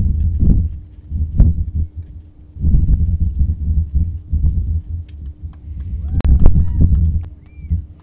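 Wind buffeting the microphone: an uneven, gusting low rumble with scattered thumps. A few short rising-and-falling chirps come in about six seconds in.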